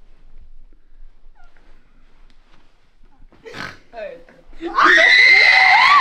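A few faint, stifled snorting giggles, then, about three-quarters of the way through, a sudden loud burst of high-pitched shrieking and laughter from several young people that carries on.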